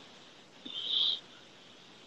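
A short, breathy laugh from a person, heard as a brief high hiss a little over half a second in. The rest is quiet.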